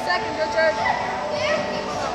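Children's voices calling and talking over general crowd babble, echoing in a large indoor hall.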